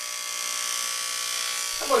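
Corded electric hair clippers buzzing steadily as they run over a man's scalp, cutting short hair.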